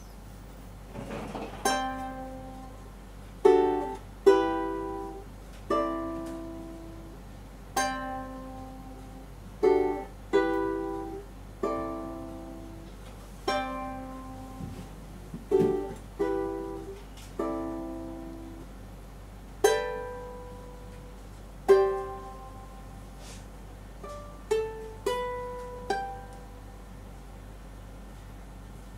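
Solo ukulele fingerpicked slowly, single notes and chords plucked a second or two apart, each ringing out and fading. The closing phrase comes as a few quicker notes, the last one about two seconds before the end.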